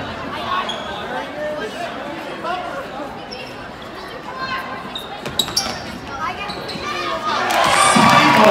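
Basketball bouncing on a gym floor amid crowd voices in a large echoing hall. Near the end the crowd noise swells into cheering.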